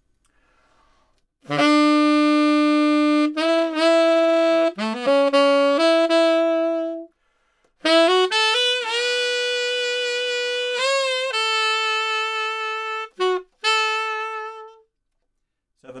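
Tenor saxophone playing two short rock-style phrases, each a few held notes with scoops into them: the opening one slides up from E to F sharp, then the line climbs B, C sharp, D sharp to a held F sharp. A brief pause separates the two phrases.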